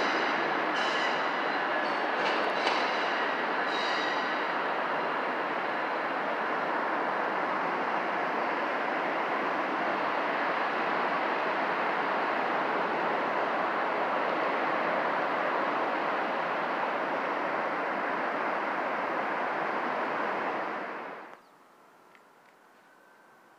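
Train rolling past in a steady rush of wheel and rail noise, with thin high-pitched wheel squeals in the first few seconds. The sound cuts off suddenly near the end.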